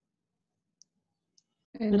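Near silence broken by two faint, short clicks a little over half a second apart, then a person starts speaking near the end.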